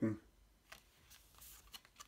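Trading cards being handled by hand, one card lifted and slid off a stack, giving a few faint flicks and a soft papery rustle.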